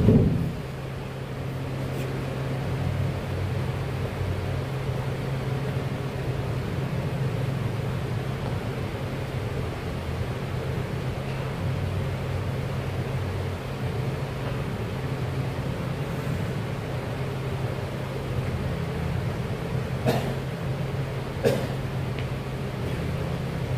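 A steady low mechanical hum throughout, with a loud knock right at the start and two short, sharp knocks near the end.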